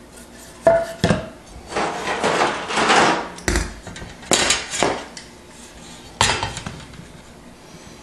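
A long steel ruler clattering as it is laid down and shifted into place across a piece of sheetrock on a plywood board: several sharp metallic knocks with a ring, and a stretch of scraping and rubbing early in the middle.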